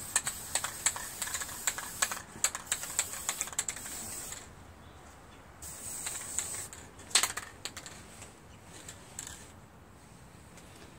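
Aerosol can of Quick Color spray paint spraying in hissing bursts with a rapid clicking mixed in for about the first four seconds. Then comes a quieter pause, a briefer burst and a sharp click at about seven seconds.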